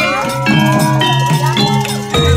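Javanese gamelan music: ringing, bell-like metal notes of several pitches struck in a running pattern, with a gliding melody line above them.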